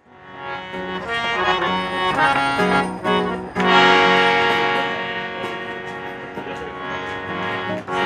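Harmonium playing held chords and notes, fading in from silence at the start.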